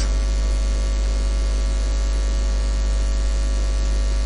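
Steady electrical mains hum, a low drone with a row of fainter steady tones above it, under a constant hiss; nothing else sounds.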